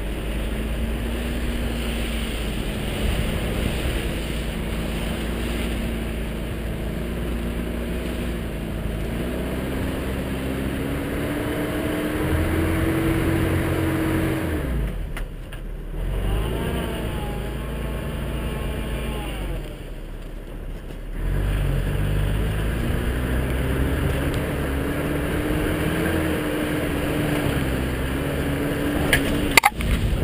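1984 Toyota SR5 4x4's four-cylinder engine pulling the truck through snow, its revs climbing and falling. It drops off briefly about halfway through and again a few seconds later, then picks up again.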